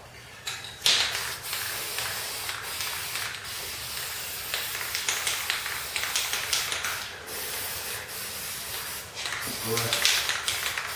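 Aerosol spray-paint can spraying with a steady hiss that starts about a second in and runs with a couple of brief breaks.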